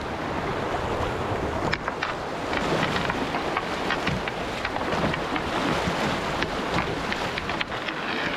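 Steady rush of shallow whitewater around a poled canoe, with wind buffeting the microphone. Many short, sharp clicks and knocks are scattered through it.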